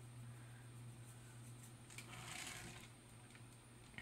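Near silence: a steady low electrical or room hum, with a faint soft scuff about two seconds in.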